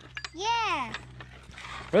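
Weathered wooden gate unlatched and swung open, with a few knocks and rattles from the wood and latch, and a short high tone that rises and then falls about half a second in.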